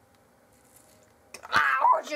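Near quiet at first, then about one and a half seconds in a click followed by a short, loud, high-pitched vocal cry.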